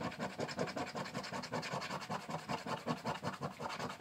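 A scratch-off lottery ticket's coating being scratched off in fast, steady, repeated strokes.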